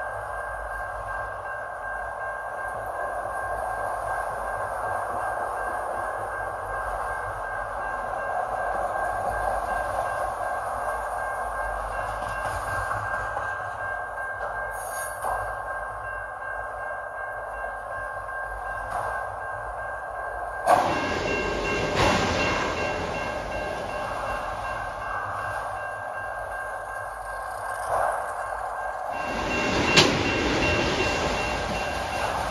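Autorack freight cars rolling past at a grade crossing: a steady rumble of wheels on rail with a high, steady squeal over it. Sharp metallic clanks come about two-thirds of the way in, twice in quick succession, and again near the end.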